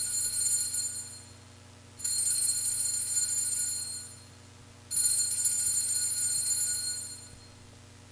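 Altar bells rung three times at the elevation of the host, each a bright, high, rapid ringing of about two seconds that dies away before the next. The rings mark the consecrated host being shown to the congregation.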